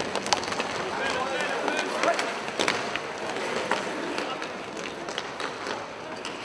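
Inline hockey play in a hard-walled arena: a steady rumble of skate wheels on the plastic floor and several sharp clacks of sticks and puck. Players' voices call out in short, indistinct shouts.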